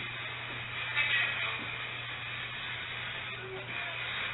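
Steady low hum and hiss of a low-bandwidth field recording being played back, with faint, indistinct noises about a second in and again near the end.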